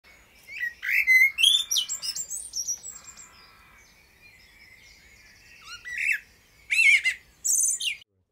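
Birds chirping and calling: a quick flurry of short chirps in the first three seconds, then a few louder, fuller calls near the end.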